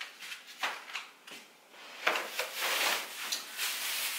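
Plastic grocery bags rustling and crinkling as groceries are handled, with a few light knocks. It is sparse at first and grows busier about halfway through.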